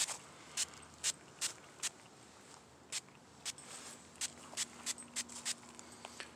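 Hand trigger spray bottle spritzing liquid onto a plastic RC truck body: about a dozen short, sharp sprays in quick, uneven succession.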